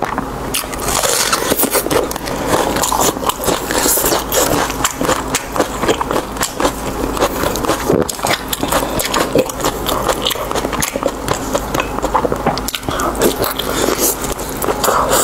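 Close-miked chewing and wet, sticky mouth sounds of eating fatty braised pork belly in chili sauce, full of dense irregular crackly clicks, over a steady low hum.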